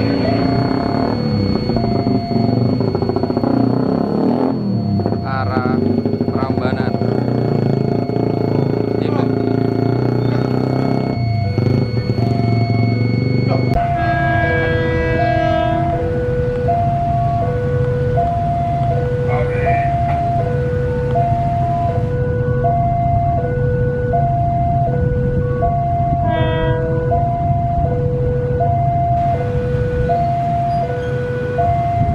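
Railway level-crossing warning alarm sounding an endless two-note chime, a higher note and a lower note alternating about every 0.7 s, warning of an approaching commuter train. Road traffic engines run under it in the first half.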